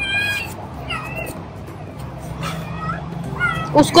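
Young puppies whimpering in four short, high-pitched cries about a second apart, as they crowd their mother to nurse.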